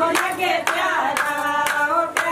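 A group of women singing a Pahari Krishna bhajan in unison, kept in time by steady hand clapping about twice a second.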